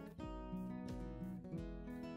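Background music led by a strummed and plucked acoustic guitar, moving through several notes and chords.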